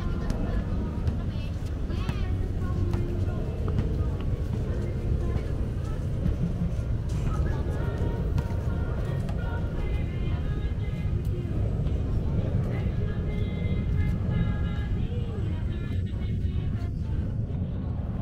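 Outdoor promenade ambience: a steady low rumble of traffic and wind, with people talking now and then.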